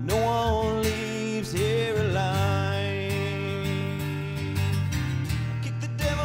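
A man singing long, held notes with a slight waver over a strummed acoustic guitar in a country song.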